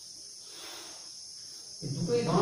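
Chalk scratching faintly on a blackboard as a small triangle is drawn, over a steady high-pitched hum. A man's voice starts near the end.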